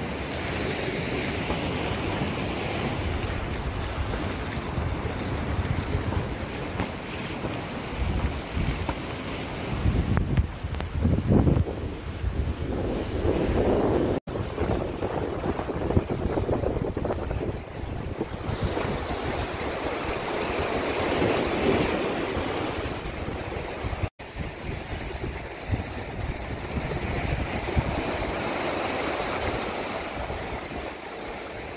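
Sea surf washing against a rocky shore, with wind buffeting the microphone in gusts, strongest about ten to fourteen seconds in. The sound drops out abruptly for an instant twice.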